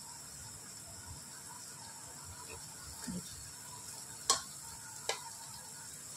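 Sliced onions and green chillies frying in oil in a pressure cooker, a soft steady sizzle, with two short sharp clicks a little past four and five seconds in.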